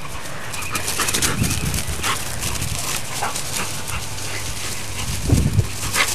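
Two dogs, a large one and a puppy, playing rough, with brief yips and whimpers. A short, deeper, louder dog sound comes about five seconds in.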